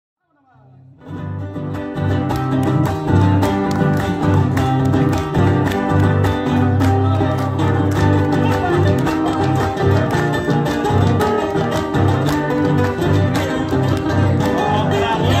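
Instrumental introduction of an Argentine folk song played live on strummed acoustic guitars, with steady strokes on a bombo legüero drum. It fades in over about the first second, then holds at a steady level.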